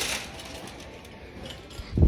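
Phone handling noise: a brief rustle of cloth rubbing over the microphone at the start, low store background noise, and a low thump of the phone being knocked or grabbed near the end.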